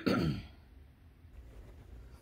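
A woman clearing her throat: a sharp catch and a short voiced sound falling in pitch, lasting about half a second, then a low steady room hum.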